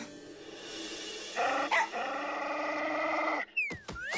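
Small cartoon dog growling in a sustained, wavering way from about a second and a half in. Near the end there is a quick falling whistle-like tone with a few sharp clicks.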